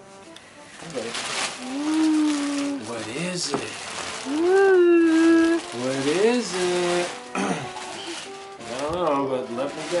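Drawn-out wordless voice sounds that slide up and hold in pitch, over the crinkle and rustle of gift-wrapping paper being pulled off a present.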